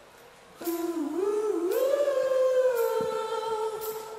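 A single voice singing a wordless, humming melody through a live sound system: it comes in about half a second in, dips and climbs, holds a higher note and fades near the end. Soft cymbal-like ticks mark a slow beat about once a second underneath.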